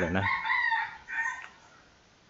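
A high-pitched bird call lasting about a second, in two parts, heard just as the man's speech stops.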